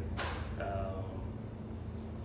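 A brief knock and rustle of a handheld microphone being handled and lowered, just after the start, over a steady low hum; a man murmurs "um".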